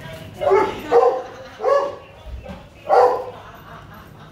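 Dogs barking: four short barks spread over the first three seconds.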